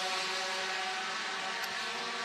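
USF2000 open-wheel race cars running at speed down the front straight, with a steady engine note.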